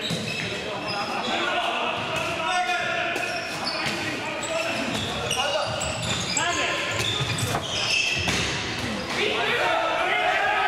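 Indoor handball play: a handball bouncing on the court floor, shoes squeaking as players cut and sprint, and players calling out, all echoing in a large sports hall.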